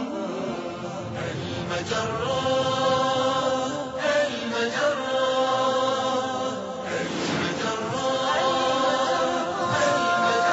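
Vocal theme music for a TV programme's opening titles: voices singing long held notes in a chant-like style, with sweeping swishes about four and seven seconds in.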